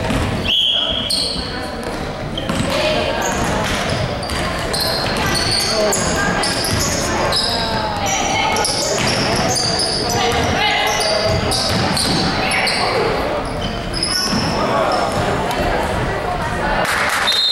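Basketball game sounds in an echoing gym: a ball being dribbled, sneakers squeaking in many short high chirps on the hardwood floor, and the voices of players and spectators.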